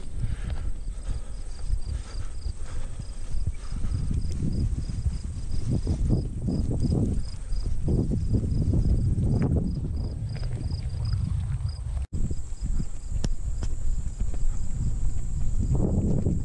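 Footsteps of a hiker walking on a mowed grass path, with low rumbling on the microphone. A high insect call pulses a few times a second over it. The sound cuts out for an instant about twelve seconds in.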